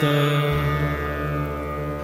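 Steady background music drone of held tones accompanying a devotional mantra chant, heard between two chanted lines with no voice singing.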